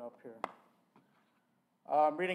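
A man's voice trails off, then a single sharp tap sounds about half a second in. A short quiet follows before he starts speaking again near the end.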